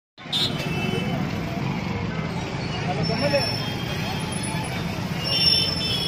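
Busy street traffic, mostly motorbikes and cars, running steadily with the voices of a crowd mixed in.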